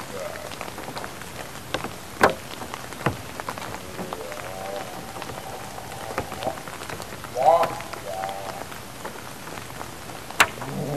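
Steady rain hiss with scattered sharp drop-like clicks, the loudest about two seconds in. Twice, a pitched, wavering voice-like call rises over it: once from about four seconds in, and louder near the end.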